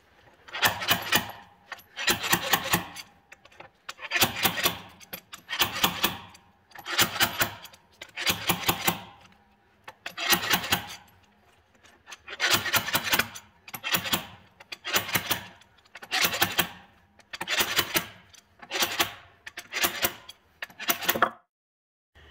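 Slide hammer fitted with an axle-bearing puller finger being worked in repeated strokes, about fourteen, roughly one every one and a half seconds, each a quick cluster of metal-on-metal clanks. It is pulling a shaft bearing out of the transmission case of a Caterpillar RD-4 crawler tractor.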